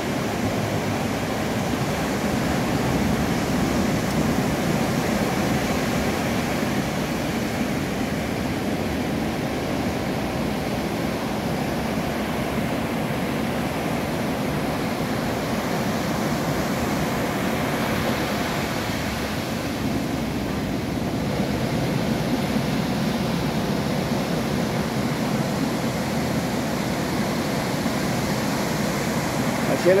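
Ocean surf: a steady rush of waves breaking on a stony beach.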